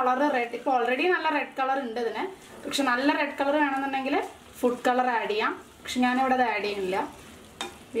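Gobi manchurian (fried cauliflower in sauce) sizzling in a nonstick frying pan as it is stirred with a plastic spatula, with a woman's voice talking over it throughout.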